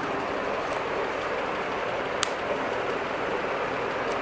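Steady room noise, an even hiss with a faint low hum, with one short sharp click about two seconds in.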